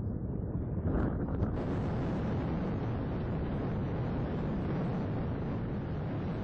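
Steady wind buffeting the microphone: a low rumble that widens into a brighter hiss about a second and a half in.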